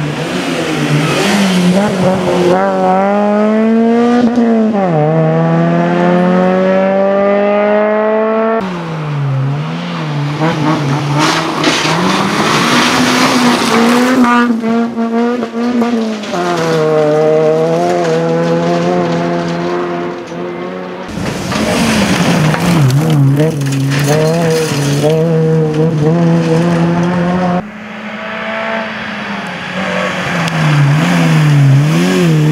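Suzuki Swift rally car's four-cylinder engine driven hard, its pitch climbing steadily under full throttle and dropping sharply at gear changes and lifts. Several separate passes follow one another, the sound changing abruptly where the shots cut.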